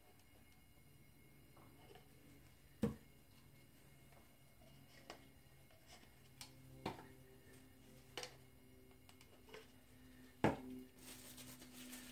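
Quiet room with a faint steady low hum, broken by several sharp light clicks and taps, the loudest about three seconds in and again near the end: plastic paint cups and a wooden stir stick being handled.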